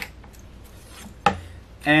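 Hand scribe point scratching across a quarter-inch Lexan sheet along a steel rule, then a sharp metal clack a little over a second in as the rule is set down on the bench.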